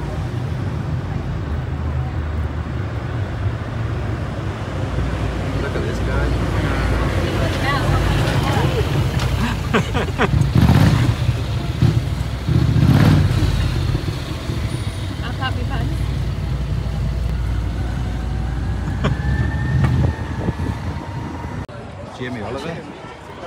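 Wind buffeting the microphone and road rumble from an open electric sightseeing buggy on the move, with a motorcycle passing close by about halfway through.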